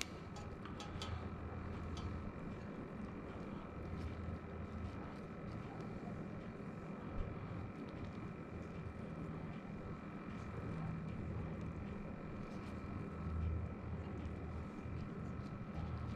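Quiet, steady low background hum with faint soft handling sounds as stuffed vine leaves are laid by hand into a stainless steel pot, and a small click about seven seconds in.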